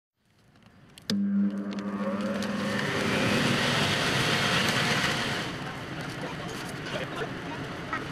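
A rocker switch clicks on about a second in, and the electric blower of a giant inflatable starts up: a low motor hum at first, then a steady rush of air that is loudest midway and eases off in the last few seconds.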